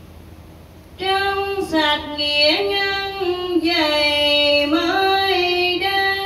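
A woman's solo voice chanting Buddhist verses to a slow melody, unaccompanied. It comes in about a second in after a short lull and holds long notes, sliding between pitches.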